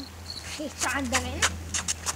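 Small bell on a fishing rod tip jingling in a quick run of short, high rings, over a steady low hum.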